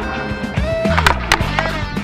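Background music with sustained bass notes and several sharp percussive hits.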